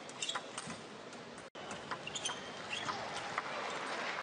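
Table tennis rally: the ball clicks off the rackets and table, with short squeaks of shoes on the court floor, over the hall's background noise.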